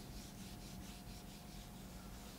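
Felt whiteboard eraser rubbing across a whiteboard in quick back-and-forth strokes, a faint repeated scrubbing hiss.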